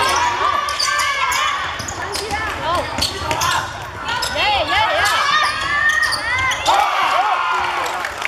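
Live youth basketball play on a hardwood court: the ball bouncing, with many short sneaker squeaks rising and falling on the floor. Voices call out over the play.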